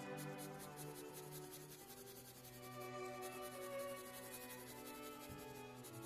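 Soft graphite pencil scratching on sketch paper in rapid short shading strokes, about five a second, over quiet background music with long held notes.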